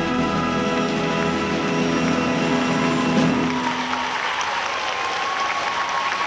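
A full symphony orchestra holds a loud closing chord that dies away about halfway through, and audience applause follows.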